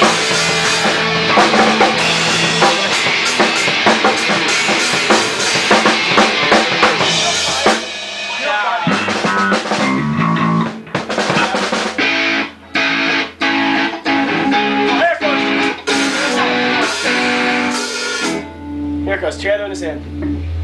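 A rock band of drum kit, electric guitar and bass playing loudly together, stopping about eight seconds in. After that come scattered drum hits and loose guitar and bass notes with some talk, and near the end a steady bass line starts.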